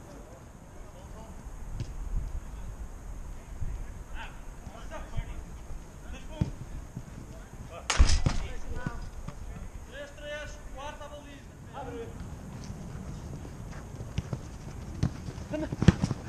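Players' footsteps and ball touches on an artificial football pitch, with shouted calls from players across the field. One loud, sharp knock comes about halfway through.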